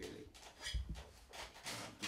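Handling of wooden drawer parts on the bench: a single soft knock of wood on wood about a third of the way in, then a brief scratchy rub near the end.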